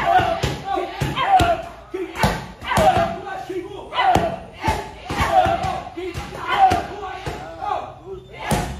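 Muay Thai pad work: punches and kicks smacking leather Thai pads and a belly pad in a quick, uneven series of sharp hits, with short shouted calls riding along with the strikes.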